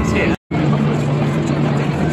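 Crowd hubbub in a busy hall: many people talking at once, with a steady low hum under it. The sound drops out abruptly for a moment about half a second in, at a cut.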